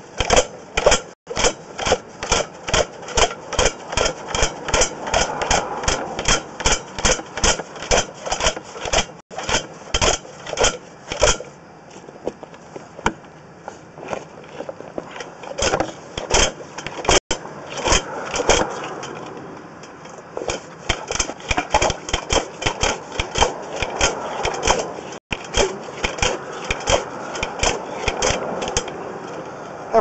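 Sewer inspection camera on its push cable knocking inside the pipe, an irregular run of sharp clicks a few times a second, thinning out for a few seconds midway, as it is worked back and forth against a trap it has a hard time getting through.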